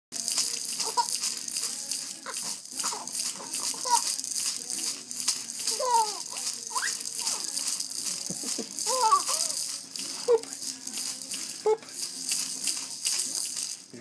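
Rattle inside a soft fabric baby toy ball, shaken by hand in a fast, continuous, irregular rattling. A few short voice sounds that rise and fall in pitch come and go over it.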